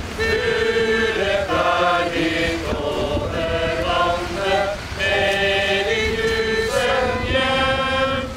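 A small group of people singing together, unaccompanied, a slow song in long held notes with short breaks between phrases.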